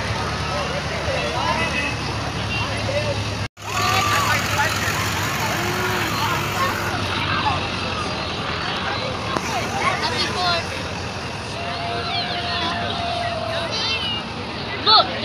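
Parade street sound: a crowd chattering along the roadside while parade vehicles drive slowly past, with a steady low engine hum through the first half. A long held note sounds near the end.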